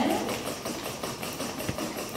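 A 3D-printed legged robot's servo motors whirring and buzzing as it moves through a choreographed dance.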